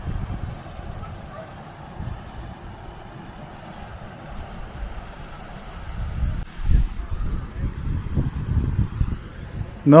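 Wind buffeting the microphone in gusts, strongest for a few seconds near the end, over a faint steady rush of water from a small weir on a beck.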